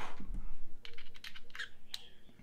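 A quick run of small, sharp clicks and taps, about half a dozen in the second half, from hard parts of a rebuildable vape atomizer and mod being handled.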